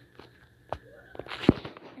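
Finger taps on a tablet touchscreen picked up by the tablet's own microphone: a few soft clicks, the loudest about one and a half seconds in.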